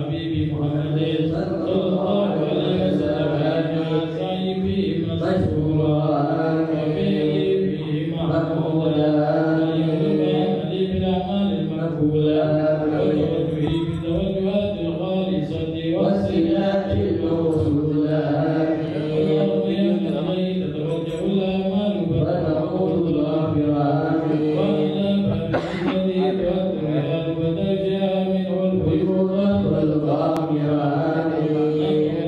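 Men's voices chanting an Arabic dhikr together in a slow, steady melody, led by one voice through a microphone. The chant runs on without a break.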